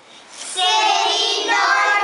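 Children's voices singing together in a long held note, starting about half a second in after a brief quiet gap.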